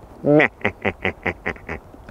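A person laughing: one voiced 'ha' followed by a quick run of short laughing pulses, about six a second, that weaken toward the end.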